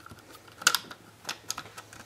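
Several short, sharp plastic clicks and clacks from a hand priming tool being handled as a shell holder is pushed into place, the loudest a little past half a second in.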